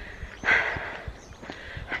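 A woman's sigh, a long breath out close to the microphone about half a second in, followed by a quick breath in near the end.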